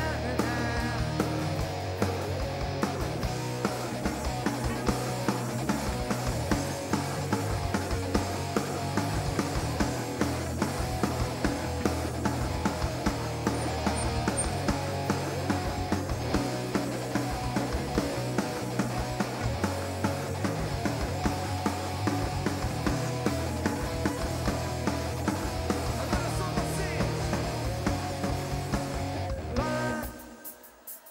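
A rock band playing live, with electric guitars, bass and drums on a steady beat, in a passage without singing. The music cuts off abruptly right at the end.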